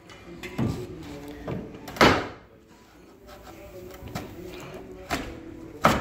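Old carpet being torn up from the floor by hand, in a series of short rips, the loudest about two seconds in.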